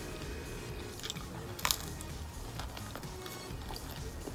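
Person chewing a mouthful of pizza, with small mouth clicks and one sharper crunch about one and a half seconds in. Quiet background music plays underneath.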